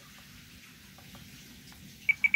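Faint steady hiss with a few soft clicks from the radio transmitter's controls as its menu pages are stepped through.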